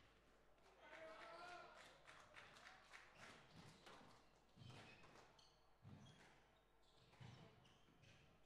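Near silence in a large hall: faint murmur of voices with a few soft thuds in the second half.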